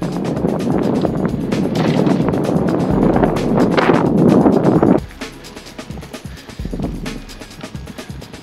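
Background music under a loud, even rumbling noise of riding a bicycle, wind and road noise on the moving camera, which cuts off suddenly about five seconds in.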